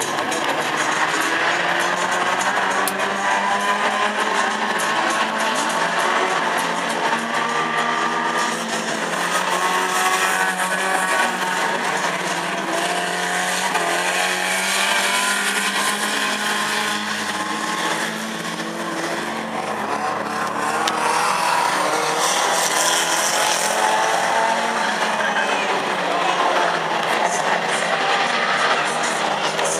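Several banger racing cars' engines running and revving together as they race around the track, their pitches rising and falling over one another.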